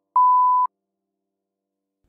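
A single steady electronic beep, the test tone that goes with TV colour bars, lasting about half a second.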